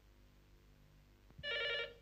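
Desk telephone ringing: near quiet at first, then one short ring about a second and a half in.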